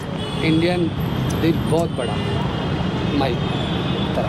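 Brief speech over a steady low rumble of street traffic.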